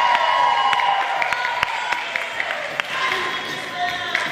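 Audience cheering and whooping, led by one long high-pitched cheer that fades about two seconds in, with scattered claps over crowd noise.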